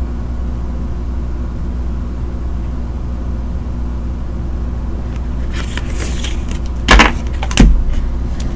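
Steady low hum, then handling noise near the end: a few light clicks followed by two short knocks about half a second apart as cards are set down on the table.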